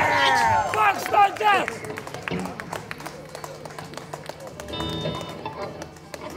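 Live rock band with electric guitars and drums finishing a song: the music, full of bending notes, stops about a second and a half in. After that comes light, scattered clapping from the street audience with a little talk.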